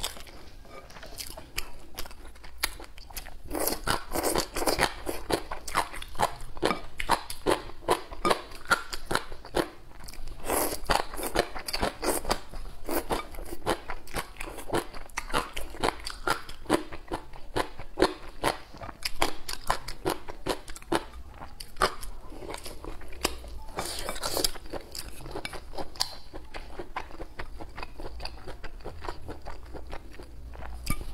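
Close-miked chewing of crisp food, a dense run of short crunches, louder in a few stretches.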